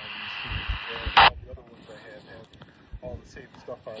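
Hiss of a repeater's carrier from a Baofeng UV-5G Mini GMRS handheld's speaker, ending about a second in with a short, loud squelch-tail burst as the repeater drops: the sign that the transmission reached the repeater.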